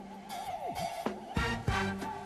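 Live band instrumental break: a keyboard synthesizer lead holds a wavering high note with vibrato and bends one note sharply downward about half a second in. Sharp drum and keyboard hits come in the second half.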